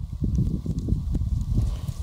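Low, uneven rumble with many soft thuds: buffeting on the camera's microphone.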